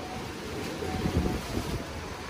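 Wind blowing on the microphone by the sea: a steady rushing noise with low rumbles, over the wash of the waves.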